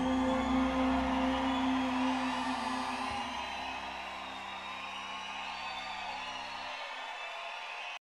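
Live rock band's final sustained chord ringing out and fading, its low notes cutting off near the end, while the concert audience cheers and whistles.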